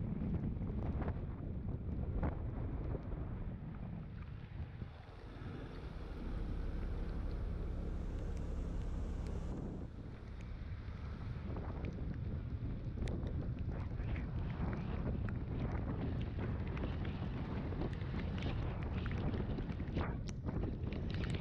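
Wind rushing over the microphone of a camera on a moving scooter, with the scooter's engine running beneath it. For a few seconds in the middle the wind noise drops and a steady engine hum comes through, then the rushing returns.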